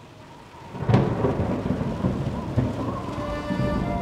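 A thunderclap about a second in, followed by rolling thunder rumble and rain, as a produced sound effect. Sustained music notes come in softly near the end.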